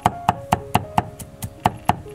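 Broad kitchen knife chopping garlic on a thick wooden chopping board: rapid, even knocks of the blade on the wood, about four or five a second.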